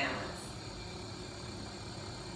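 Steady low hum of the endoscopy cart's running equipment, the video processor and light source cooling fans.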